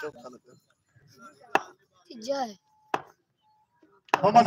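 Two sharp knocks about a second and a half apart, with brief faint shouts from players before and between them.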